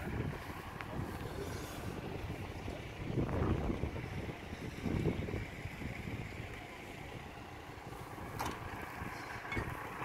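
Refuse truck's diesel engine running while stopped at the waste containers: a steady low rumble that swells louder a couple of times, about three and five seconds in.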